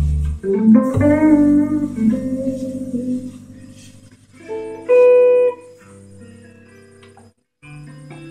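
James Tyler Studio Elite electric guitar played through a Brunetti Singleman amp and recorded on a phone's microphone. It plays a slow jazz ballad phrase of chords and single notes, each left to ring and fade. The notes come about a second in and around five seconds, with a brief stop just before a new chord near the end.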